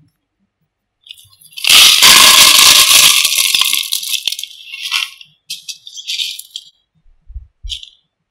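Expanded clay pebbles poured from a plastic bucket into a plastic plant pot as a drainage layer on its bottom. A loud, dense rattle lasts about two and a half seconds, then a few scattered clicks as the last pebbles fall, and a couple of soft thumps near the end.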